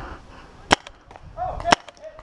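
Tippmann TiPX paintball pistol firing two shots about a second apart, each a sharp crack followed by a fainter tick.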